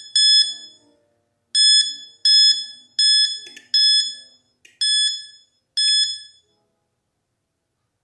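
Button-tap sound effect of an Android phone app: a short high chime that dies away quickly, sounding about seven times at irregular intervals of roughly a second as the on-screen switches are pressed one after another, then stopping a couple of seconds before the end.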